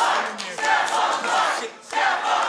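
A crowd shouting together in a large room, many voices overlapping, dropping away briefly near the end.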